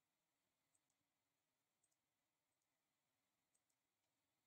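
Near silence, with three faint double clicks spaced about a second apart.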